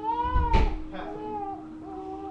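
Baby vocalizing: one drawn-out call that rises and falls in pitch, then two or three shorter calls, with a thump about half a second in. A steady hum runs underneath.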